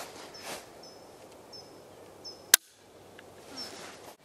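A Sako bolt-action rifle's trigger dry-fired: one sharp metallic click about two and a half seconds in. Small birds chirp briefly several times in the background.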